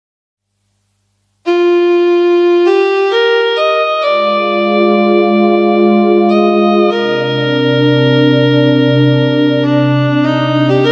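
Instrumental karaoke backing track opening with sustained organ-like electronic keyboard chords. It starts about a second and a half in, the chords change every second or so, and a deep bass line joins about seven seconds in.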